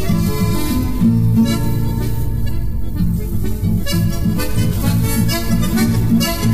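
Instrumental chamamé from a Correntino ensemble: accordion and bandoneón playing the melody over guitars keeping a steady rhythm in the bass.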